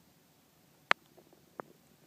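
Quiet background broken by two short, sharp clicks: a louder one just before a second in and a fainter one about two-thirds of a second later, with a few small ticks between them.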